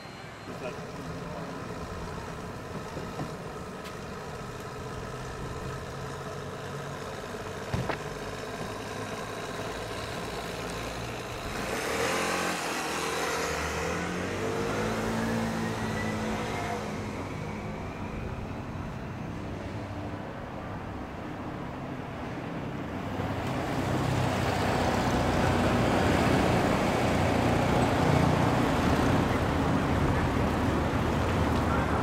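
Light road traffic: cars passing on a paved street, one with a rising engine note as it speeds up about twelve seconds in, and the noise of another car growing louder toward the end.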